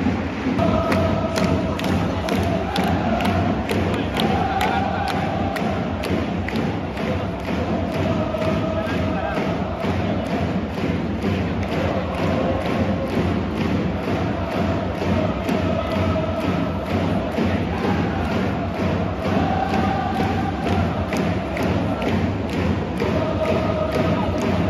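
A large crowd of football supporters chanting in unison, with a drum beating steadily at about two beats a second under the chant.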